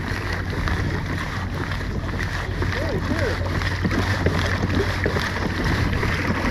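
Kayak under way on calm water: a steady low hum and wash, with wind on the microphone.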